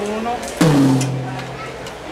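A rack tom, tuned down, struck once about half a second in; it rings with a low tone that dips slightly in pitch at the hit and fades over about a second.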